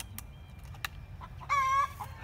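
A chicken calling once, a short steady squawk near the end, with a single sharp click a little under a second in.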